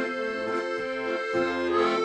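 Ballone Burini Cantus 34a piano accordion playing held chords, with an acoustic guitar strummed alongside.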